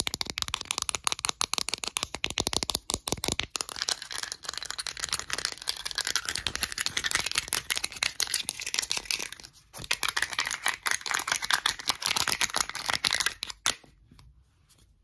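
Short fingernails tapping and scratching fast on a clear container and its pale blue plastic lid, a dense run of quick clicks and scrapes with a brief pause about two-thirds of the way through.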